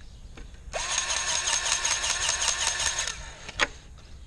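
Battery-powered grease gun motor running for about two and a half seconds with a fast pulsing beat, about six pulses a second, pumping grease into a fitting. A single sharp click follows shortly after it stops.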